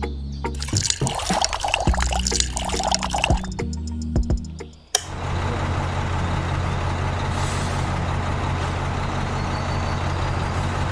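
Wet, crackly liquid and drip sounds from cement mix and water in a toy cement mixer's drum, over background music. After a sharp click about halfway through, a small electric motor hums steadily.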